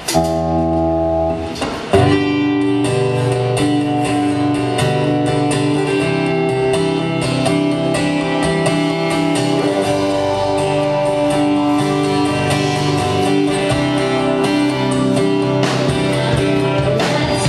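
Live rock band playing a guitar-led instrumental intro. A chord rings out for about two seconds, then the band comes in with a steady strummed rhythm.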